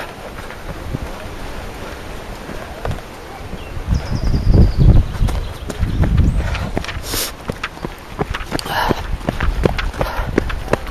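Running footsteps on a dirt and gravel trail, with low thuds and rumbling as the handheld camera jolts with each stride. The footfalls come quick and regular in the second half.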